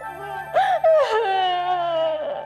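A woman wailing in one long, falling cry, over background music.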